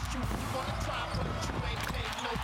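Rhythmic percussive thumps form the beat of an edited montage soundtrack, over a steady bass, with voices mixed in.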